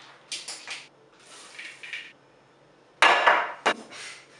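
Chocolate chips rattling as they are poured from a plastic bag into a measuring cup, in short bursts, then a loud clatter about three seconds in followed by a sharp knock.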